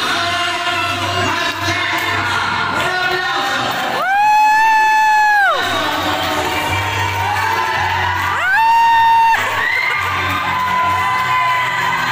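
Music playing with a crowd of children and adults cheering in a large hall. Two loud, long high-pitched vocal calls stand out, about four seconds in and again about eight and a half seconds in.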